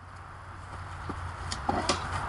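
Hard plastic wheels of a toddler's ride-on toy bike rolling over pine straw and dirt, the rolling noise building over the second second, with a few short clicks.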